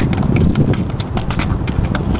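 Tap shoes striking a metal plate set in the pavement in a quick, dense run of taps.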